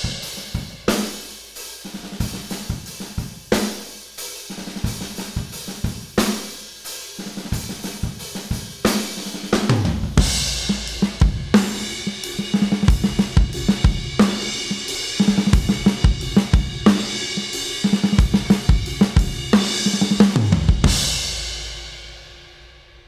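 A Pearl acoustic drum kit playing a groove of kick, snare, hi-hat and cymbals. It is heard first as the raw, unmixed recording in an echoey room. From about ten seconds in it is the mixed version, fuller in the low end and louder. Near the end a final hit rings out and fades.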